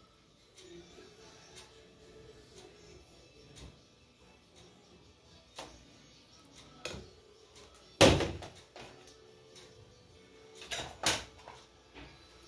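A plastic blender jug set down on a stainless steel kitchen counter: one loud knock about two-thirds of the way in, followed by two lighter knocks near the end.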